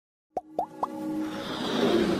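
Animated logo intro sound effects: three quick plops about a quarter second apart, each a short upward blip in pitch, followed by a rising musical swell that builds toward the end.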